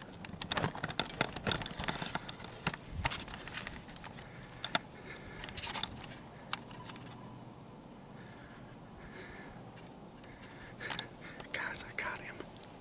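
Close handling noise of a camera and clothing: a run of rustles, clicks and knocks over the first few seconds. Near the end come short, breathy whispered exclamations.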